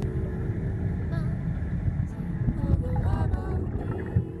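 A steady low rumble with faint voices in it.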